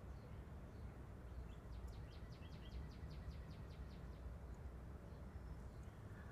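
Faint outdoor ambience over a steady low rumble, with a bird giving a quick series of about a dozen short high chirps from about a second and a half to three seconds in.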